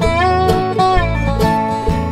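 Country-bluegrass band of mandolin, dobro, guitars and electric bass playing between sung lines, with held notes that slide up into pitch at the start.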